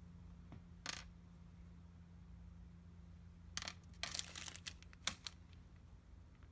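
Light clicks and a short clatter of small hard parts being handled and set down on a hard surface: one click about a second in, then a cluster of clicks and rattles between about three and a half and five seconds, over a faint low hum.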